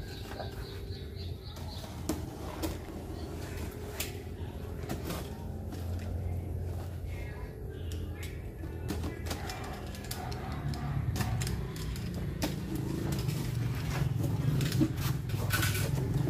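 A knife slitting packing tape on a cardboard carton, with scattered short clicks and scrapes. Near the end the cardboard flaps are pulled open with a louder scrape. A steady low hum runs underneath.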